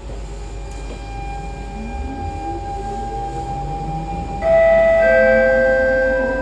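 Siemens GTO-VVVF traction inverter of a Siemens C651 train whining as the train accelerates from a stop: rising tones from about a second in. About four and a half seconds in it jumps abruptly, and much louder, to a new set of steady tones, and these shift again about a second later.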